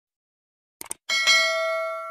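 A short click sound effect, then a bright notification-bell ding that rings with several tones and slowly fades, marking the bell icon being pressed in a subscribe animation.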